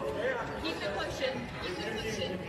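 Speech from a played-back video clip: voices in a tense exchange in a gym, one asking "Are you okay?"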